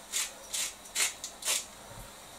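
A seasoning shaker shaken over a cooking pot: four quick hissy rattles about half a second apart as granules are shaken out.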